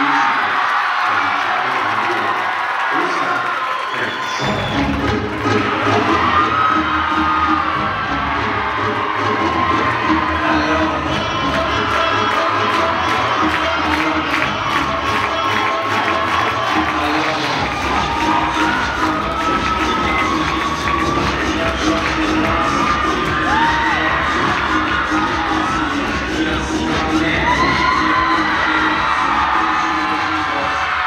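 Gymnasium crowd cheering and screaming, with routine music that starts about four seconds in with a steady bass beat.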